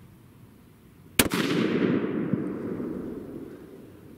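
A single rifle shot from a 7mm PRC bolt-action rifle fitted with a three-port muzzle brake, about a second in, followed by a long rolling echo that fades away over about two and a half seconds.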